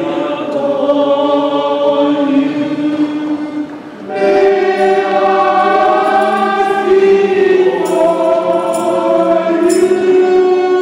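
Voices singing a slow hymn together in long held notes, with a short break about four seconds in before the next phrase begins.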